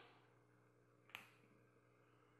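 Near silence with one sharp, short click a little past a second in, from a plastic loom hook and rubber bands being worked off the loom's pegs.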